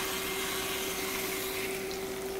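A steady mechanical hum, likely from a running kitchen appliance, over a soft, even sizzle of yellow squash and onions sautéing in a stainless steel pan.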